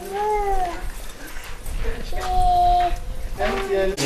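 Two drawn-out, high-pitched wailing cries. The first rises and falls, and the second, about two seconds in, holds one pitch. A low rumble runs under them.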